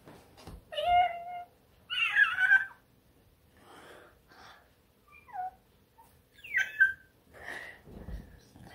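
A cat meowing four times: two longer, wavering meows in the first three seconds, the second the loudest, then two short meows falling in pitch later on.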